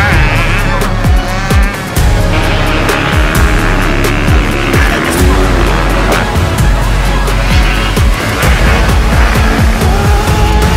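Motocross dirt bike engines revving hard and shifting pitch as the bikes accelerate through the sand, mixed with backing music.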